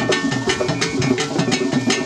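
Traditional drum ensemble playing a fast, steady rhythm: about six sharp strikes a second over repeated pitched low drum notes.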